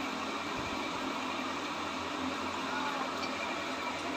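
Kitchen tap running steadily, its water splashing into the sink.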